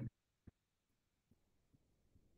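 Near silence: room tone through the microphone, with the end of a soft voiced murmur at the very start and one faint click about half a second in.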